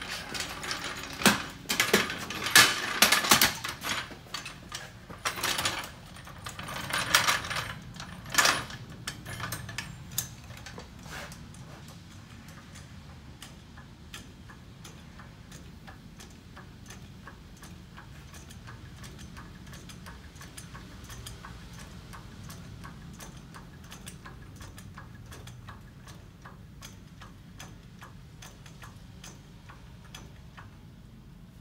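Heavy steel tooling and a hydraulic jack being set up under a truck axle: irregular metal clanks and knocks for the first nine seconds or so. After that comes a long, steady run of light, evenly spaced ticks.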